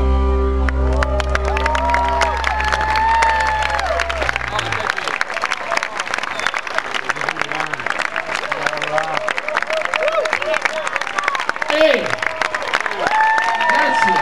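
A rock band's last chord, with bass and electric guitar, rings out for the first few seconds and then stops. A large crowd is clapping, cheering and shouting, and it goes on after the music ends.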